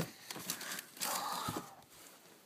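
Rustling and bumping of things being rummaged through close to the microphone, with a few sharp knocks and a louder rustle about a second in that lasts half a second.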